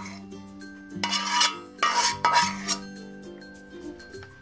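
A spatula scraping saucy stir-fried beef out of a wok into a serving bowl: a click at the start, then two scraping strokes about one and two seconds in, over soft background music.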